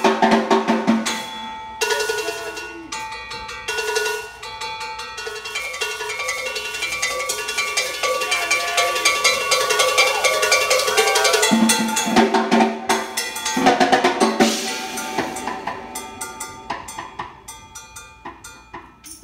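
Jazz-fusion band playing live, with drum kit and congas to the fore over sustained keyboard and instrument notes. There are heavy accented hits near the start and again about twelve to fourteen seconds in, and the music then thins out and gets quieter near the end.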